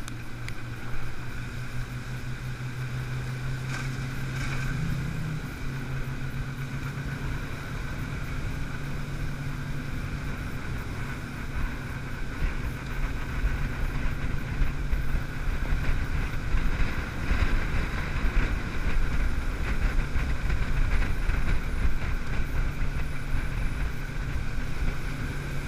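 Small boat's motor running steadily under way, its pitch rising briefly about five seconds in before settling back, with wind noise on the microphone.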